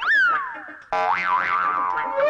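Comic soundtrack sound effect: a boing-like tone that jumps up and then glides down in pitch for about a second, followed by a pitched tone that wobbles up and down.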